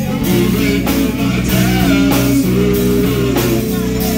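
Live rock band playing an instrumental passage: electric guitars over bass and a steady drum beat.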